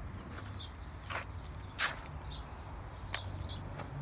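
Faint birds chirping over a low steady hum, with three footsteps on wood-chip mulch.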